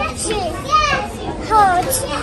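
Young children's voices: two short, high-pitched gliding calls, one just before a second in and another about a second and a half in, over the general sound of children playing.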